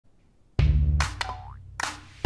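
Animated intro music with cartoon sound effects: about half a second of near silence, then a loud deep bass note, a sharp hit about a second in followed by a short sliding tone that rises in pitch, and another hit near the end.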